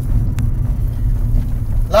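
Lancia Musa 1.4 16-valve car driving, heard from inside the cabin: a steady low drone of engine and road noise, with one faint click about half a second in.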